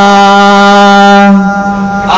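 A male voice singing one long held note on a steady pitch in a daf muttu song, weakening about one and a half seconds in, with no drum strokes.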